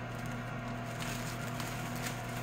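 A steady low electrical hum from a kitchen appliance, with faint rustling of the plastic wrap being pulled off a frozen pizza.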